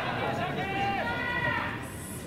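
Loud shouted voices calling out long, drawn-out cheers from the stands, in a rising and falling cadence.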